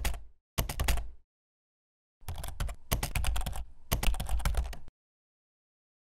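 Rapid clicking like typing on a computer keyboard, in short runs: one brief run, another about half a second later, then, after a pause, a longer run lasting nearly three seconds that stops abruptly.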